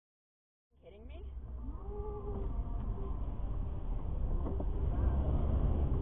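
Low, steady rumble of a car driving, as picked up by a dashcam, starting about a second in and growing louder. A few short, wavering high-pitched sounds come over it in the first half.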